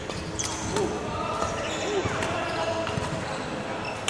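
Badminton play on an indoor wooden court: a few sharp racket hits on the shuttle and short squeaks of court shoes on the floor, with voices in the background of the hall.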